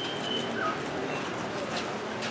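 Short bird chirps over a steady haze of outdoor background noise and distant voices.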